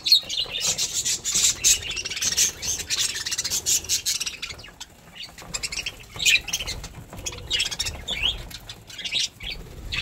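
A flock of budgerigars chattering: a dense run of short, high chirps for about the first four seconds, then thinning to scattered calls.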